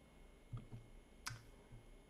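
Near silence with a single faint mouse click a little after a second in.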